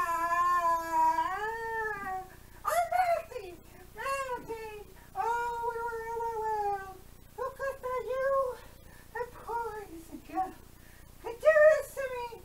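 A high voice wailing in long, wavering cries, then shorter broken yelps from about seven seconds in: the melting cries of a witch who has just been doused with water.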